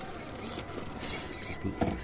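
Redcat Ascent LCG 1/10-scale RC rock crawler's electric motor and drivetrain whirring in short bursts of throttle as it crawls over rocks: one burst about halfway through and another starting at the end.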